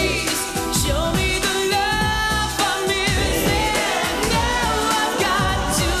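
Pop song performed by a boy band: male voices singing over a backing track with a steady beat.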